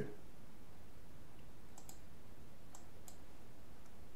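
A few faint computer mouse clicks, about two to three seconds in, over a low steady background hiss.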